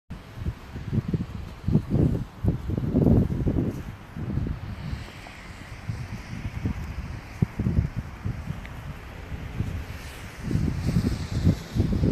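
Snowstorm wind buffeting a phone microphone in irregular low gusts, strongest in the first few seconds and again near the end.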